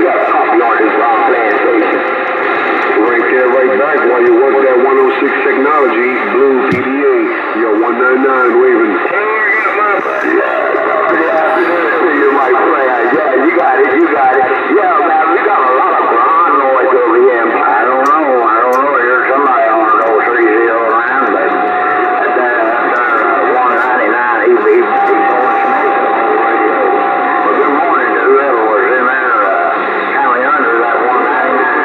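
Bearcat CB radio receiving AM voice traffic on channel 28: several distant voices talking over one another, thin, tinny and unintelligible above a bed of static. A steady whistling tone comes and goes near the end, typical of a carrier heterodyne.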